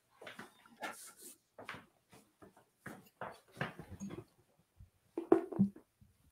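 Faint scattered knocks, clicks and rustles of a person moving about a small room, fetching a book off-camera.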